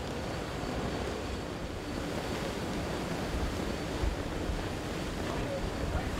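Steady rush of wind and sea between two ships running alongside each other, with wind gusting on the microphone.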